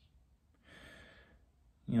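A man's single soft breath, lasting under a second, in a pause between sentences.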